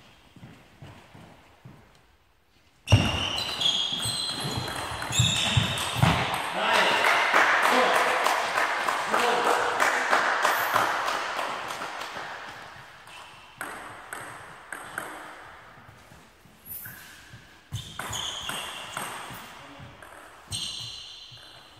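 Cheering and applause from the spectators start suddenly about three seconds in and fade away over about ten seconds. Near the end, a table tennis ball is bounced on the table in a series of ringing pings.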